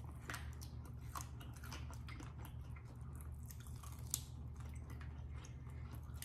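Faint, close-miked chewing and biting of grilled chicken: small wet mouth clicks and smacks, with one sharper click about four seconds in.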